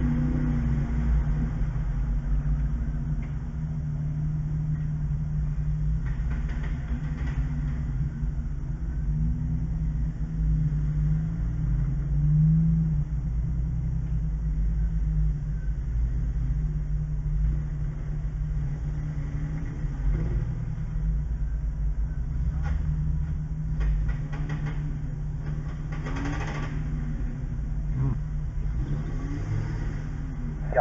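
Jeep Wrangler engine idling steadily while stopped, heard from inside the cab, with a brief small rise in engine speed about twelve seconds in.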